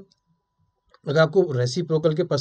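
Silence for the first second, then a man speaking from about a second in.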